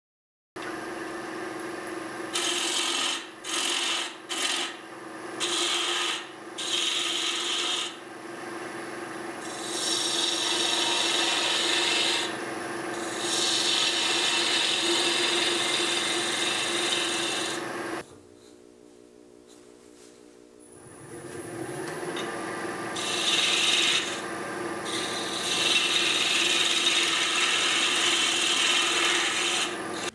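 Spindle gouge cutting apple wood spinning on a wood lathe: a scraping cutting noise comes and goes over the lathe's steady hum, in short strokes at first and then in longer cuts. The sound drops away for about two seconds past the middle, then a hum rises in pitch and the cutting resumes.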